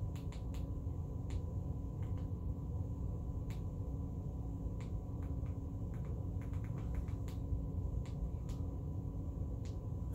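Room tone: a steady low hum with a faint constant tone running through it, and scattered light clicks every second or so.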